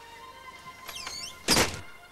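A front door swung shut, closing with one loud thud about one and a half seconds in, just after a brief squeak. Soft background music plays underneath.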